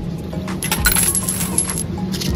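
Coins jingling for about a second, a cash-register style sound effect, over steady background music.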